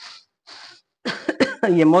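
A woman clearing her throat and coughing, running into speech near the end; two short soft hisses come just before.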